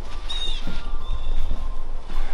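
Low rumble of wind and handling noise on a moving camera as a person walks in through a doorway, with a short high-pitched squeak about a third of a second in.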